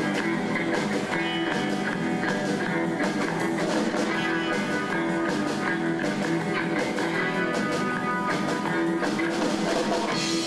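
Live band playing a surf-rock number, electric guitar leading over a drum kit with a steady beat.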